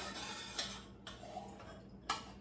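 A metal utensil lightly ticking against a cooking pot twice, about half a second and a second in.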